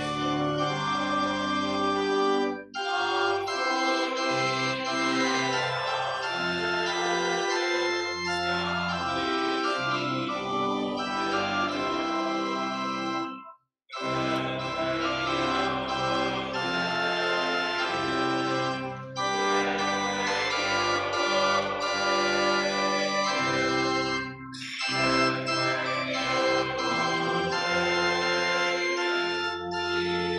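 Organ playing a hymn tune in held chords, the phrases separated by short breaks, with a moment of silence about 14 seconds in.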